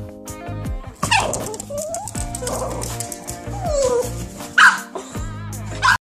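Small dog whining and yipping, worked up at a rabbit outside the window: several gliding whines, then a sharp, loud yip a little over four and a half seconds in and another at the very end. Music plays steadily underneath.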